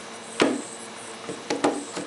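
Punctured Headway 38120 lithium iron phosphate cell venting and boiling, with a steady hiss and a few sharp cracks or pops: one about half a second in, and two close together about a second and a half in. The cell is discharging hard internally through the puncture, and its electrolyte is boiling.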